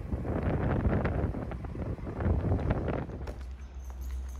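Wind buffeting the microphone over a low rumble, easing off about three seconds in to a steadier low hum.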